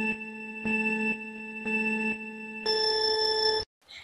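Electronic countdown beeps: three low beeps about a second apart, then a longer, higher beep that cuts off sharply.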